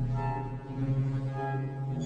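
Effect-distorted soundtrack: a low, steady droning hum, with fainter higher tones swelling in and out over it.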